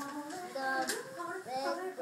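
Young children's high voices reading a tongue twister aloud, drawn out and sing-song. There is a short sharp click about a second in.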